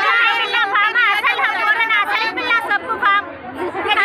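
Several people talking at once in a crowd, their voices overlapping, with a brief lull about three and a half seconds in.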